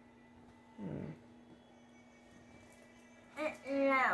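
A mostly quiet room with a faint steady hum, broken by a short falling vocal sound about a second in and a brief voice near the end.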